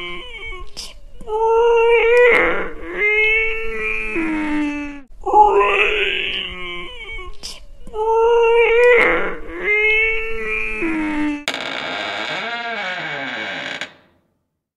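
Eerie moaning, wailing vocal sounds in a phrase of about seven seconds that plays twice, part of the video's background soundtrack. For the last couple of seconds a different held sound takes over, its pitch dipping and rising.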